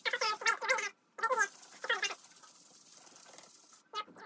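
A solvent-soaked rag and gloved hand squeaking against a silk-screen mesh as it is scrubbed clean of ink: a quick run of short, high, chirping squeaks with each stroke, a brief break about a second in, then a few more squeaks trailing off into faint rubbing.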